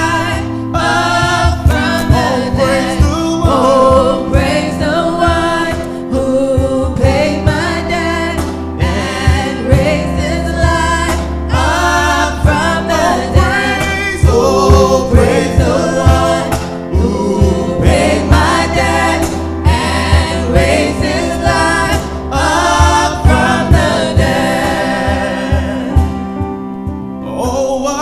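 Live gospel worship song: several voices singing together over electric keyboards, with a steady beat.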